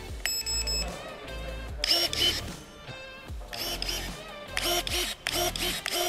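Background music with short electronic beeps from a cordless electric pruning shear about half a second in. Then comes a series of short whirring bursts as its motor-driven blade opens and closes.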